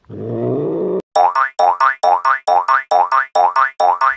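A short low animal sound, then from about a second in a rapid string of springy rising 'boing' sounds, about four a second, each opening with a sharp click, like a cartoon spring sound effect.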